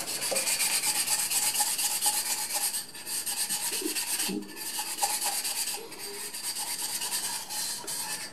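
The cut edge of a green glass wine bottle is rubbed by hand on 400-grit wet-or-dry sandpaper in water: a scraping of quick back-and-forth strokes with brief pauses about three and six seconds in. The sanding takes the sharp edge off the freshly cut glass.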